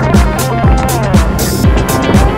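Electronic dance music with a steady kick drum about twice a second, hi-hats and a synth melody.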